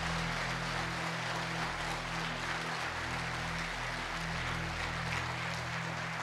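A steady electrical hum from the microphone's public-address system under an even hiss of hall room noise, with no clear events.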